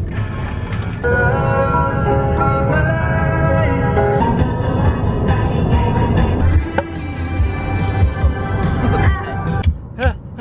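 Background pop music with a heavy bass beat and sustained melodic tones, cutting off at the very end.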